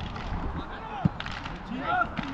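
Footballers' voices: short shouted calls across the pitch as players jostle in front of the goal, with one sharp knock about halfway through.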